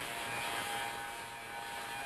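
A steady hum with hiss, even in level throughout.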